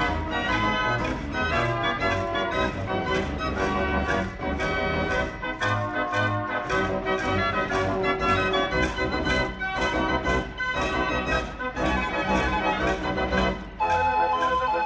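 Dutch street organ (draaiorgel) 'De Brandweer', built by Perlee of Amsterdam, playing a brisk march on its pipes with a steady percussion beat.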